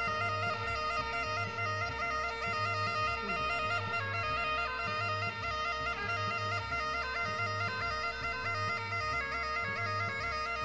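Bagpipe melody playing over a steady drone, with a low bass pulse repeating about once a second beneath it.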